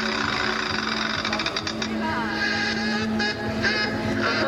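Carnival parade music accompanying a dancing troupe, with a sustained low note, mixed with voices from the crowd. A quick run of clicks comes about one and a half seconds in.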